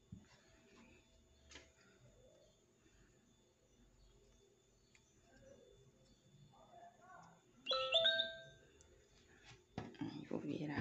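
A short electronic chime, two notes in quick succession, rings out about eight seconds in and fades within a second. Before it there are only faint handling sounds from hands working a crochet hook through cotton twine.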